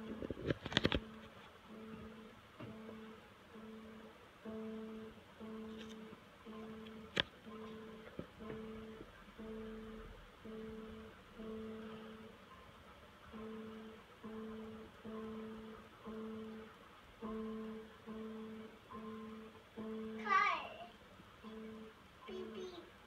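Electronic keyboard played by a toddler: the same low note pressed over and over, about once a second, each note fading before the next, with a few higher notes near the end.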